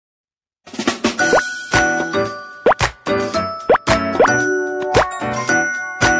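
Light, bouncy jingle for an animated channel bumper, with dings, clicks and several quick upward-sliding pops. It starts after a brief silence about half a second in.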